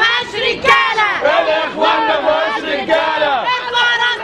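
Women shouting loudly and angrily in a crowd, several high-pitched raised voices overlapping without a break.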